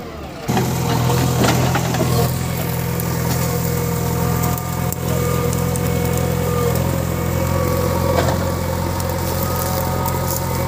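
JCB 3DX backhoe loader's diesel engine running steadily, growing louder about half a second in.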